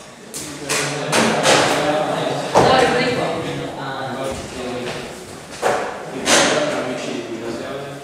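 Students' voices, several people talking at once in indistinct classroom chatter, with a few sharp knocks and thumps scattered through.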